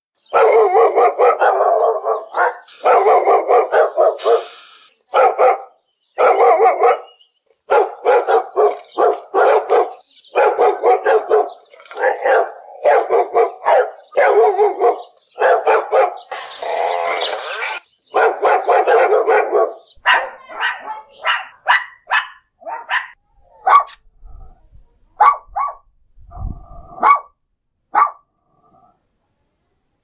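A dog barking over and over: fast, dense barking for about the first twenty seconds, then shorter, more spaced-out single barks toward the end, with a brief low rumble about 26 seconds in.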